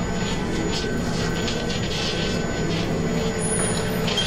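Motor-driven kinetic sculptures by Jean Tinguely running: a steady mechanical hum of electric motors and turning gears, with irregular metallic rattling and clattering over it.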